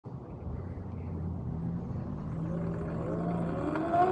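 Sur-Ron X electric dirt bike pulling away, its electric motor whine climbing steadily in pitch from about halfway through as the bike speeds up, over a low rumble of road and wind noise.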